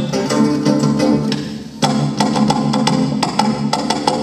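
Live samba-bossa band playing an instrumental passage: plucked strings and bass under sharp, steady hand-percussion strikes. The music thins out briefly about a second and a half in, then comes back in full.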